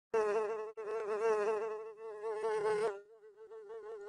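Buzzing sound effect for a cartoon bee in flight: one steady buzz with a slightly wavering pitch, broken once for an instant. It is loud for about three seconds, then carries on more faintly.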